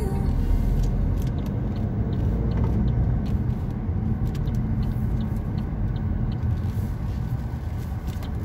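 Car cabin noise while driving slowly through town: a steady low rumble of engine and tyres heard from inside the car, with faint light clicks scattered through it.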